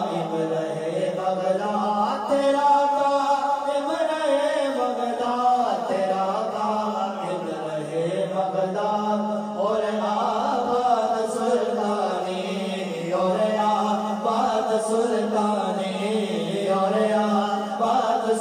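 Male voices reciting a salam naat, an Urdu devotional song, without instruments: a lead voice sings long, ornamented lines over a steady low held note.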